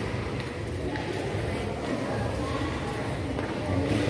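Indistinct background voices of a crowd in a large indoor hall, a steady murmur with no close speaker.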